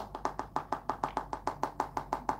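Rapid, even tapping on a handheld smartphone, about eight sharp taps a second, keeping up through the whole stretch.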